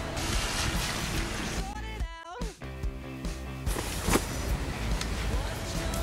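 Steady noise of passing road traffic, broken about two seconds in by a brief gliding tone and about a second of music.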